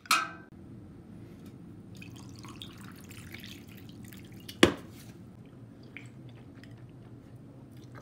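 Canned cocktail poured from an aluminium can over ice into a glass: faint, uneven trickling and splashing of liquid on ice. There is one sharp clink about two-thirds of the way through, and a brief sharp sound at the very start, just after the can is opened.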